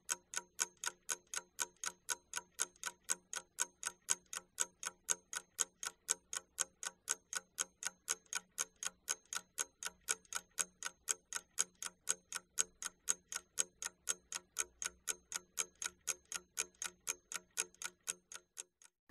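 Clock-ticking timer sound effect: even, identical ticks at about four to five a second, counting down the time allowed for working on a task.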